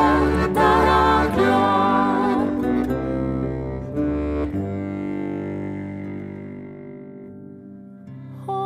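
Alpine folk trio of violin, concert zither and Styrian button accordion playing. About four and a half seconds in the phrase ends on held notes that fade away steadily.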